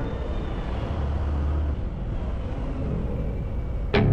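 Harley-Davidson Sport Glide's Milwaukee-Eight 107 V-twin running at low speed, a steady low rumble that swells slightly about a second in.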